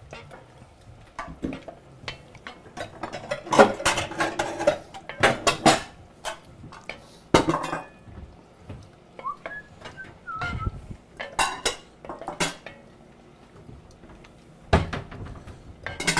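Serving utensils clinking and scraping against pots and plates as food is dished out, in irregular clusters of sharp clinks and knocks.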